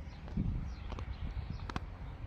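Footsteps climbing stone stairs: sharp taps of shoes on the steps, two about a second in and a quick pair near the end, over a steady low rumble.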